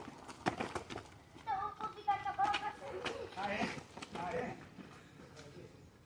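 Children's voices calling out in two short spells, with a cluster of quick taps in the first second, in step with running footsteps on a hard dirt driveway.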